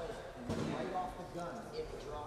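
Indistinct talk from people in the room, with one sharp knock about half a second in.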